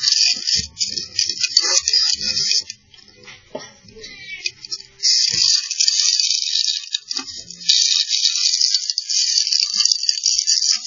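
Chimney inspection camera scraping and rattling against the sooty flue walls as it is pushed through the flue. The scraping is harsh and choppy, eases off for a couple of seconds about three seconds in, then runs on steadily.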